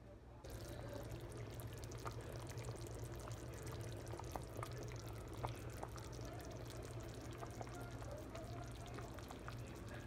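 Pot of rabbit stew boiling: broth bubbling steadily with many small pops, starting about half a second in.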